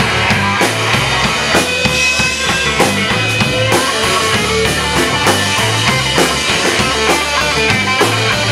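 Live blues-rock band playing an instrumental passage with no vocals: drum kit keeping a steady beat under a repeating bass line, with picked electric guitar on top.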